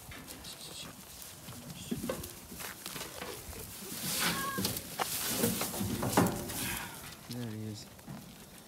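Dry hay rustling and crackling, with scuffling, as a Boer goat kid is pulled out of a hay feeder by hand. It is loudest in the middle of the stretch.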